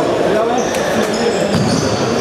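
People talking in a reverberant sports hall, with shoes squeaking on the court floor and two sharp knocks about a second apart.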